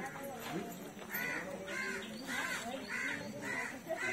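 A crow cawing repeatedly, about six caws at roughly two a second, starting about a second in.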